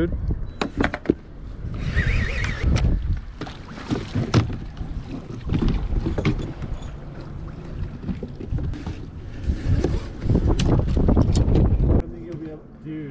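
Wind buffeting the microphone in a low rumble, strongest near the end, with scattered clicks and knocks from a fishing rod and tackle being handled on a boat.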